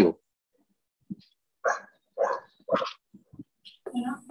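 A dog barking: three short barks about half a second apart, after a brief sound about a second in.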